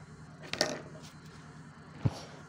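A single short handling sound, a brief tap or rustle, about half a second in, over faint room noise, as the cardboard and paper are picked up and moved.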